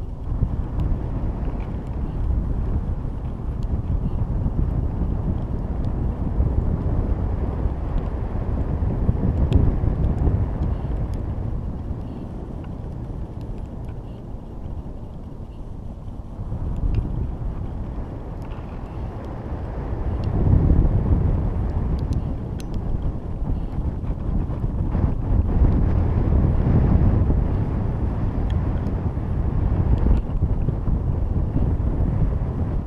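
Wind buffeting the microphone of a camera riding on a high-altitude balloon flight: a low rumble that swells and eases several times, with a few faint ticks.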